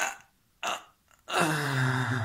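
A person close to the microphone makes two short vocal noises, then a long, low-pitched burp starting about a second and a half in.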